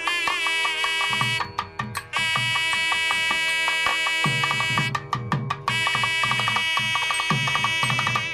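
Temple wedding music: a nadaswaram playing long held notes over thavil drum strokes. The drumming grows stronger about four seconds in.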